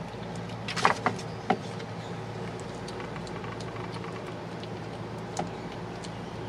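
A kitten chewing soft boiled potato and corn, with a few short clicking smacks about a second in and once more near the end, over a steady low mechanical hum.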